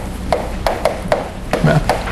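Chalk writing on a blackboard: a quick run of short, sharp taps, about three a second.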